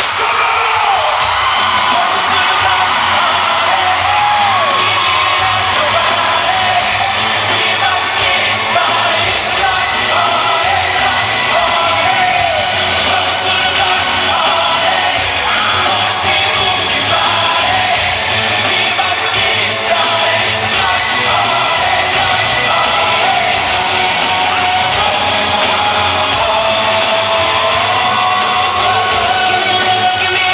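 Live pop concert: amplified band music with singing under a crowd of fans screaming and cheering, recorded from within the audience in a large arena.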